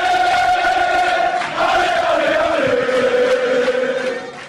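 Channel intro music of massed voices chanting long held notes, with the pitch sliding lower a little past halfway.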